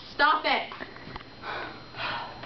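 A person's voice briefly near the start, then quieter sound with a soft breathy hiss about halfway through.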